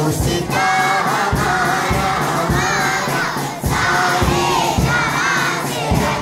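Many children's voices singing together loudly over a steady low beat, about two beats a second.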